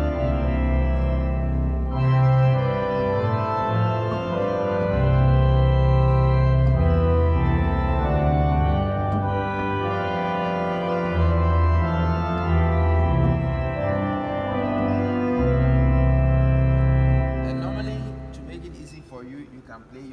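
Church organ playing a slow passage of held chords, with deep bass notes played on the pedal board under the manuals. The playing breaks off a few seconds before the end and the sound dies away in the room's reverberation.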